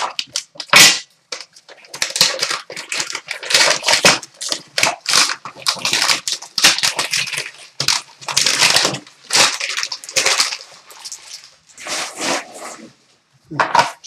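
Gold foil pouch crinkling and tearing as it is ripped open and handled, in a long run of irregular rustling bursts. A single sharp knock about a second in is the loudest sound.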